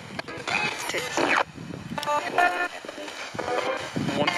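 Spirit box sweeping through radio stations: choppy bursts of static broken by clipped fragments of broadcast voices and music. One fragment near the end is taken by the investigator as the word "one", answering his question.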